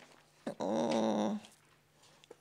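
A woman's drawn-out hesitation sound, a held "uh" on one steady pitch lasting just under a second, spoken mid-sentence into a handheld microphone.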